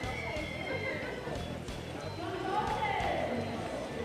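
Indistinct voices with music in the background.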